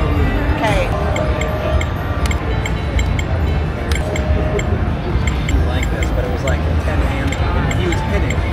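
Busy casino floor ambience: background music and a steady murmur of voices, with a light ticking rhythm about three times a second and no single sound standing out.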